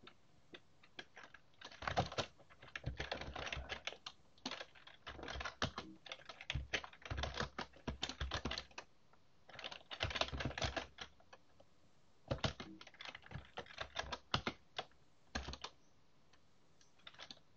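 Computer keyboard being typed on in quick bursts of keystrokes separated by short pauses, entering commands in a terminal.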